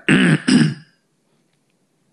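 A man clearing his throat twice in quick succession, about a second in all.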